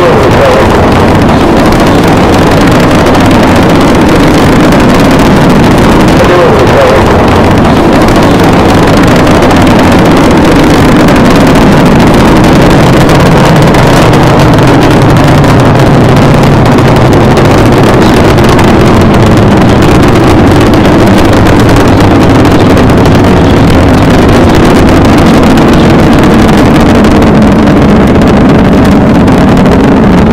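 Rocket engines at liftoff in a launch recording: a loud, steady, dense noise with a low rumble.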